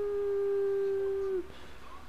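A woman's voice holding one long drawn-out note that sinks slightly in pitch and stops about one and a half seconds in.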